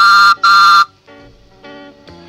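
Two short, loud toots of a postman's whistle, the read-along record's signal to turn the page.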